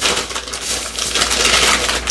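Loud, dense rustling and crackling handling noise, like something being crumpled or rubbed close to the microphone.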